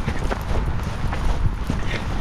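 Footsteps of a person walking through grass: irregular soft thuds over a steady low rumble.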